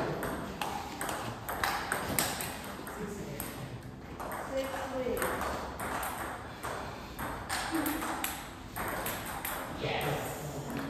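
Table tennis balls clicking off bats and tables in rallies, a quick irregular run of sharp ticks, with strokes from more than one table overlapping.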